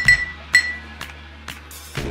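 Hot sauce bottle clinking against the rim of a drinking glass during a pour: a ringing clink at the start and a second one about half a second in, then a few faint ticks. Background music plays throughout.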